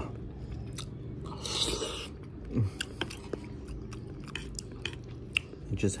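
Close-up chewing of champorado, a soft chocolate rice porridge, eaten from a spoon: soft mouth sounds and small scattered clicks, with a short noisy spell about a second and a half in and a brief hummed 'mm' partway through. A steady low hum runs underneath.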